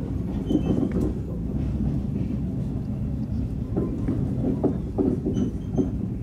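A State Railway of Thailand passenger train running along the track, heard from inside the carriage: a steady low rumble from the wheels and running gear, with short knocks every second or so from the rails.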